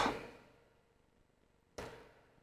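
Near silence: room tone after a spoken word trails off, broken near the end by one brief, soft rush of noise.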